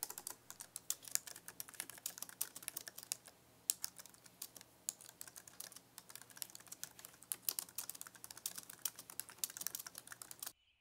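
Fast typing on a computer keyboard: a rapid, irregular run of soft key clicks, with a brief pause about three seconds in.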